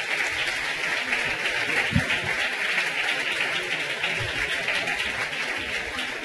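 Audience applauding steadily, with a brief low thump about two seconds in.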